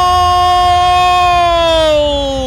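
A commentator's long drawn-out shout held on one pitch, starting to slide down near the end.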